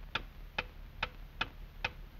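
Steady, clock-like ticking from a cartoon sound effect: five sharp, evenly spaced clicks, a little over two a second.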